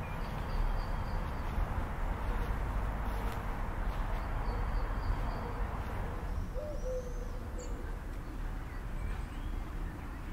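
A bird cooing softly over outdoor ambience, with a steady low rumble underneath; the cooing call is clearest about two-thirds of the way through.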